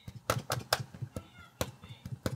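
Setting-spray bottle's pump sprayer spritzing in a quick run of short, sharp sprays, about three or four a second, misting the face.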